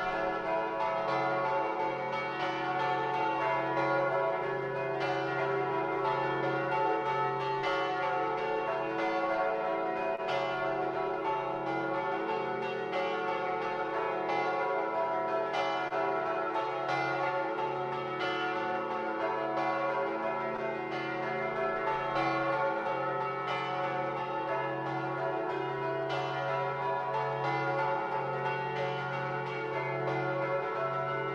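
Several church bells ringing together, struck again and again so that their tones overlap in a continuous peal, heard through a video call's audio.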